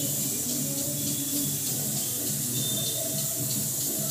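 A hand rubbing and squeezing a crumbly flour-and-oil papdi dough in a steel bowl, a steady rustling and scraping, with a steady low hum underneath.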